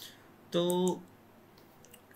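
A few faint computer keyboard clicks near the end, after a man says one short word.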